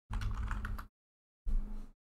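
Typing on a computer keyboard, keys clicking in two short bursts: one of under a second at the start, and a briefer one near the end.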